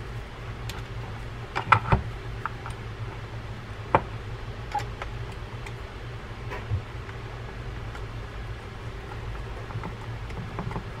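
Small metal clicks and taps of a screwdriver and screw against a fishing reel's metal frame as side-plate screws are set and driven in. A quick cluster of sharp clicks about two seconds in is the loudest, with single clicks near four and five seconds, over a steady low hum.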